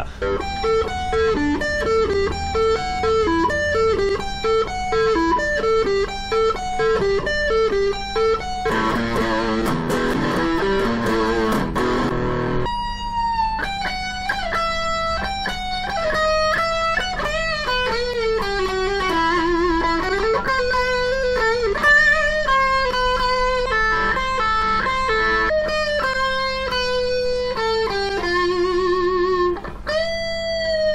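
Gold-top Les Paul-style electric guitar playing a rock lead. It starts with a quick repeating picked phrase, breaks into a dense fast run about nine seconds in, then holds long notes that are bent and shaken with vibrato, and ends with a fast trill near the end.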